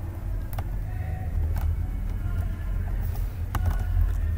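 A steady low rumble with a few scattered clicks from a computer keyboard as code is typed.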